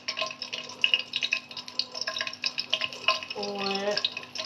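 Cooking oil sizzling and crackling in a pot around whole spices (a cinnamon stick, then star anise dropped in), with many small irregular pops. A voice is heard briefly near the end.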